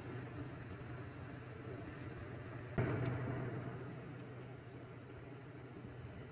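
Wire strippers closing on a solar panel cable, one sharp click about three seconds in, over a steady low hum.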